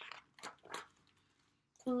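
Page of a hardcover picture book being turned: three short, faint paper rustles in the first second.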